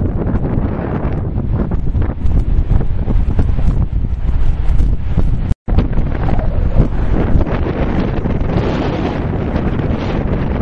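Strong wind buffeting the camera's microphone, a rough low rumble that rises and falls in gusts. The sound cuts out completely for an instant a little past halfway through.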